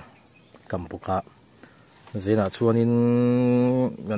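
A man's voice says a few short syllables, then holds one long, steady, drawn-out vowel for about a second and a half near the end.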